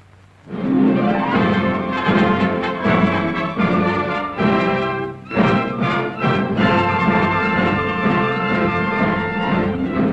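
An orchestra in an old film soundtrack playing the introduction to a sung anthem, coming in about half a second in after a brief hush, with a short break about five seconds in.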